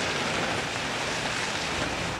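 Loose rock and gravel sliding down a quarry face in a steady rushing noise.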